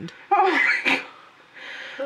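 A woman's breathy, half-whispered exclamation, loud and lasting about half a second, followed by a softer breath near the end.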